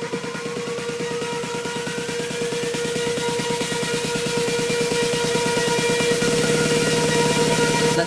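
Electronic dance music build-up: a fast, even pulsing beat under a held synth tone and a slowly rising sweep, getting steadily louder until the drop right at the end.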